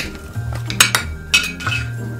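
A few sharp clicks and clinks as a small advent-calendar box is handled and opened on a table, over steady background music.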